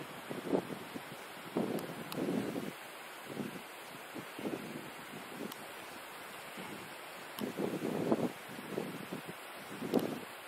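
Wind on the microphone outdoors, a steady hiss with irregular louder gusts or rustles that come and go every second or two.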